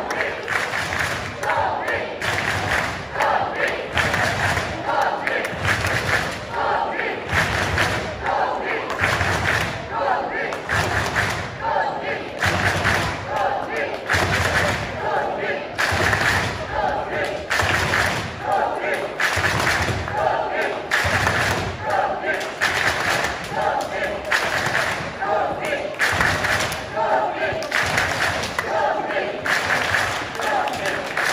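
Hall crowd chanting "Conny! Conny!" in a steady rhythm, with low thuds keeping the beat.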